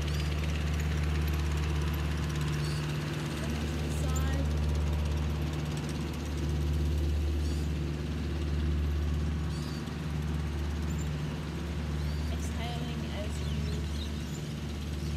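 Tractor engine running steadily nearby, a low drone that swells and eases every few seconds as it works the beach sand.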